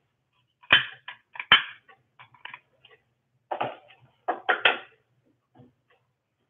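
Knocks and clatters close to the microphone, in irregular clusters of sharp taps, typical of someone handling the recording device or objects right beside it.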